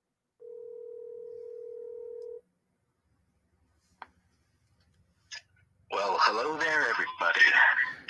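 Telephone ringback tone over a phone's speaker: one steady ring lasting about two seconds, the sign that the call is ringing at the other end. A click follows a couple of seconds later, then a voice comes in near the end.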